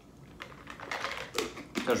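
A run of light clicks and taps from a plastic snack canister and its lid being handled and fitted back on, starting about half a second in.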